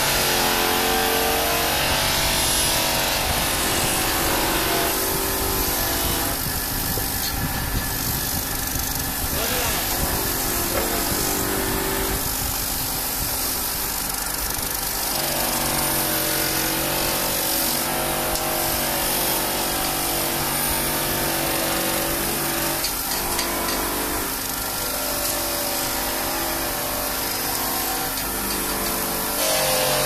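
Polishing motor spinning a wire brush wheel that scrubs rust off a steel mesh air filter pressed against it. A steady machine hum whose pitch shifts every few seconds as the load changes, under a constant scratchy hiss.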